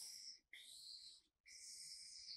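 Marker pen drawn in long strokes across sketchbook paper, ruling out the sides of a square: faint, high scratchy squeaks in three strokes of about a second each, with brief pauses between.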